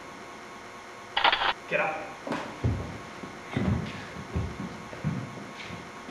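A short sharp cry and a brief vocal sound about a second in, followed by several dull low thumps, like a scuffle as a person is hauled up from the floor.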